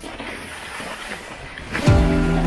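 Touring skis sliding over packed snow, a steady shuffling noise. Near the end, background music comes in with a loud falling low swoop and a held chord.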